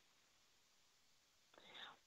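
Near silence in a pause in the talk, with a faint short breath near the end.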